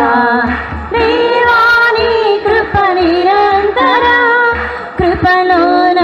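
A Christian worship chorus sung by voices with women's voices to the fore, over a steady low beat of about two pulses a second.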